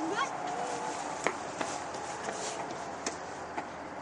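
Faint voices over a steady outdoor background hiss, with a few light clicks scattered through.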